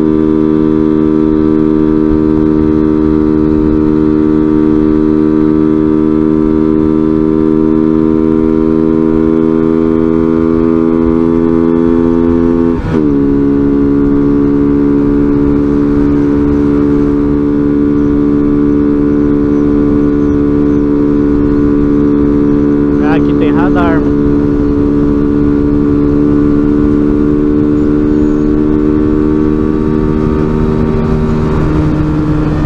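Small motorcycle engine running steadily at highway cruising speed, with wind rumble on the helmet-mounted camera. Its note climbs slowly, drops sharply about 13 seconds in, then climbs slowly again.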